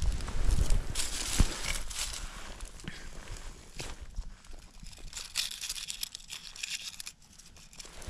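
Dry fallen leaves crackling and rustling in irregular bursts as a hand rummages through the leaf litter for a small stone, with a thump about a second and a half in.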